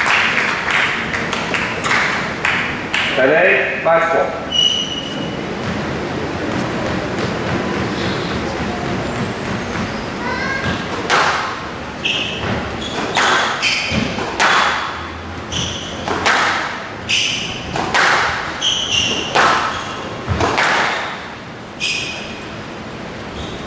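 Crowd chatter between points, then a squash rally: the ball cracking off rackets and walls about once a second from about halfway in, with shoes squeaking on the court floor.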